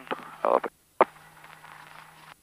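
Cockpit intercom or radio audio feed: a short croaky voice sound, then a click and the steady low hum of an open channel.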